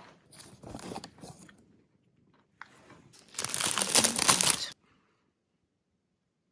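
Clear cellophane bag crinkling as it is handled around a red bean bun: softer crackles in the first second and a half, then a loud burst of crinkling lasting just over a second, about three seconds in.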